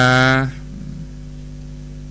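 A man's voice holds a drawn-out syllable for about half a second. Then comes a pause filled by a steady, low electrical hum.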